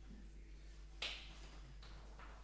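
The last chord of a Viennese grand piano fading faintly, cut off about a second in by a single sharp click.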